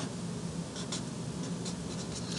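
Marker writing on a whiteboard: faint scratchy strokes with a few short, higher squeaks as letters are drawn.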